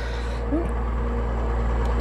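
2002 Chevrolet Trailblazer's 4.2-litre inline-six engine idling steadily, heard from inside the cab.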